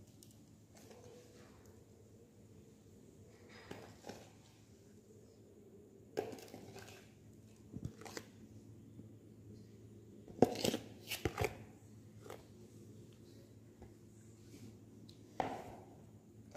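A metal spoon knocking and scraping against a plastic bowl and a plate as a soft mixture is scraped out onto the plate, in scattered clicks with a loudest cluster of knocks a little after the middle.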